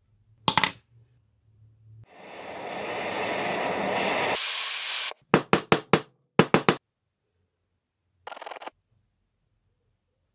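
Handheld butane torch flame hissing for about three seconds as it heats the end of a steel threaded rod, then seven quick hammer blows, four then three, on the hot rod end against a steel vise jaw, flattening it.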